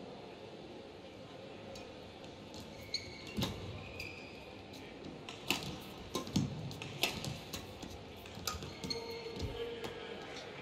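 Badminton rally: sharp racket strikes on the shuttlecock roughly once a second, mixed with short shoe squeaks on the court floor. The rally starts about three seconds in, after steady hall tone.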